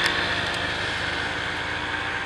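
A motor vehicle's engine running steadily, slowly fading away.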